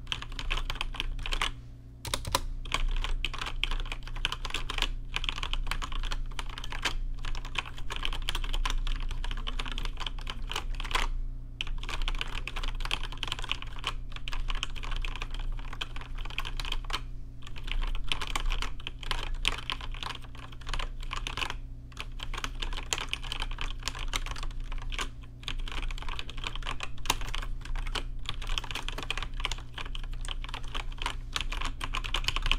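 Fingers typing fast on a backlit computer keyboard: a dense, continuous clatter of key clicks, with a few brief pauses every several seconds.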